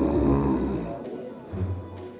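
A woman's loud, put-on snore lasting about a second near the start, from someone faking sleep, over background music with a low bass pulse.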